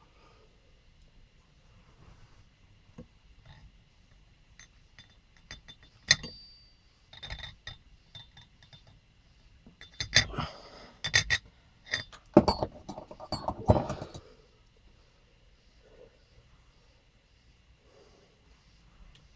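Scissors snipping the loose twine ends off a cord-wrapped handle: a series of sharp clicks and cuts, mixed with light clinks of handling, from about six seconds in, busiest between ten and fourteen seconds.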